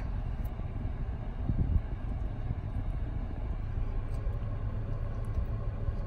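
Steady low rumble of a car heard from inside its cabin, with a few faint clicks.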